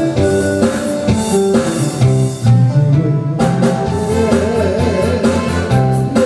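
A man singing a Korean ballad into a handheld microphone over accompaniment with guitar and drums; the voice comes in about halfway through, after an instrumental passage.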